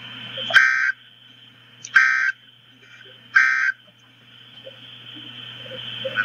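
Emergency Alert System end-of-message data bursts: three short, harsh digital buzzes about a second and a half apart, the coded signal that closes the severe thunderstorm warning.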